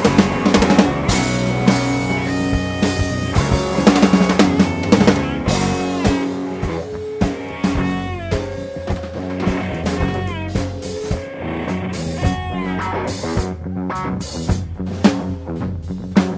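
Live band playing: harmonica over electric guitar, bass and drum kit, with held and bent harmonica notes over the drums.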